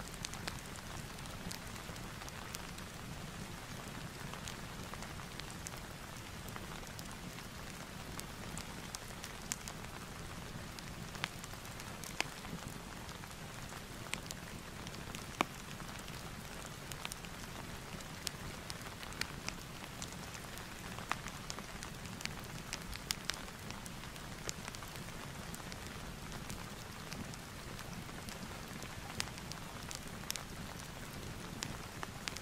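Rain and fireplace ambience: a steady hiss of rain with scattered sharp crackles and pops throughout.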